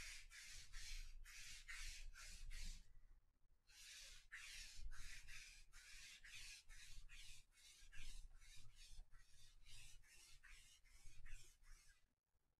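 Lint roller being rolled back and forth over a fabric-covered tabletop: a quiet, rhythmic run of sticky rasping strokes, about three a second, with a short pause about three seconds in.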